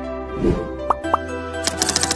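Short intro music with sound effects: a low plop about half a second in, two quick pops near one second, then rapid keyboard-typing clicks from about a second and a half in.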